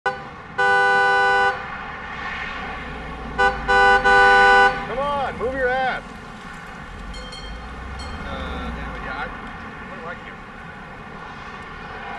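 Car horn honking: one steady blast of about a second, then a couple of quick beeps running into a longer blast, over the low rumble of a car engine.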